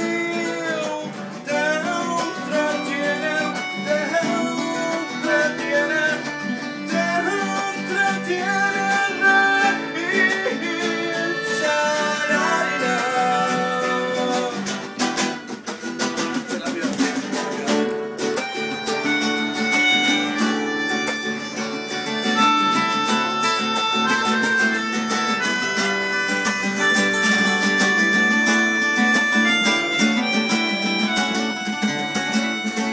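Acoustic guitar strummed in chords with a melodica playing the melody over it. From about halfway through, the melodica's reedy notes are held long and steady.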